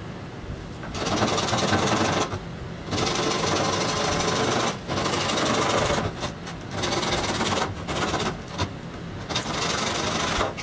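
Hand saw cutting through a large plastic pipe: rapid back-and-forth rasping strokes in runs of a second or two with brief pauses between, becoming choppier in the second half.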